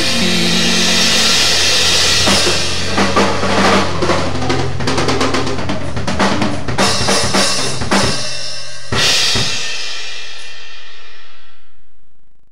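Drummer on a DDrum maple kit playing along to the close of a rock track: a held guitar-and-bass chord under a run of fast drum fills, then a last big cymbal-and-drum hit about nine seconds in that rings on and fades out near the end.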